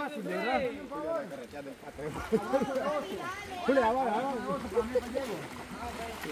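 Indistinct chatter of several voices, talking over one another.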